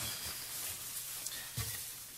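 Quiet room tone of a large hall with faint rustling and shuffling as people stand up from their seats, and a soft low thump about a second and a half in.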